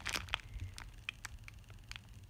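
Clear plastic bag around a bar of soap crinkling in the hands as it is handled: a scattering of small, light crackles.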